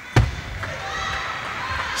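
A single sharp thump just after the start, then the steady murmur of a large hall with faint voices.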